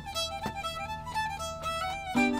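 Fiddle bowed in an old-time tune, a steady drone note held under a shifting melody.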